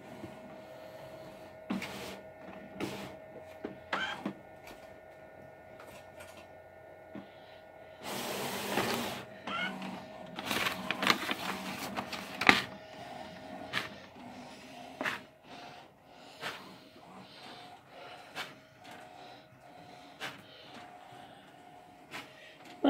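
HP large-format inkjet printer starting a print job: a steady hum with scattered clicks and clunks, and a louder noisy mechanical stretch from about eight to twelve seconds in.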